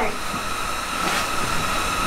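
Steady hissing noise with a constant thin whine running under it, the sound of something running continuously nearby.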